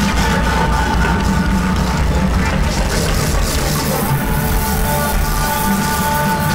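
Live band playing with drums, bass, electric guitars and keyboards, at a steady beat.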